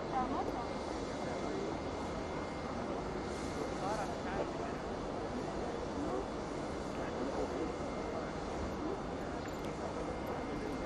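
Airport apron ambience: steady noise from a parked airliner, with indistinct chatter of people nearby.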